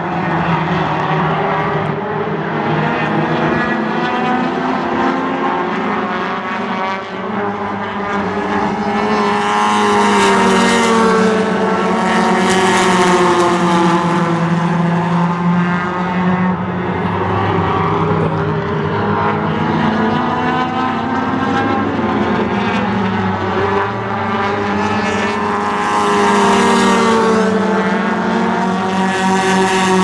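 Engines of several tuner-class race cars running laps together, a continuous drone whose pitch bends up and down as the cars come past. The sound swells loudest about a third of the way in and again near the end as the pack passes closest.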